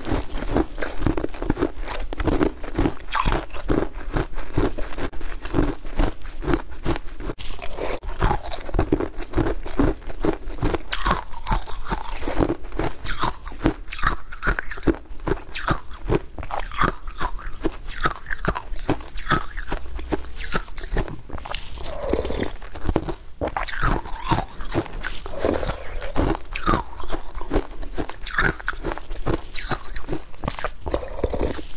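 Close-miked crunching and chewing of small pink food cubes eaten by the spoonful, a quick run of short crisp crunches that goes on throughout.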